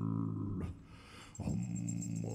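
Tuvan kargyraa throat singing: a low held note with a dense stack of overtones. It breaks off about half a second in for a breath and is taken up again near the middle.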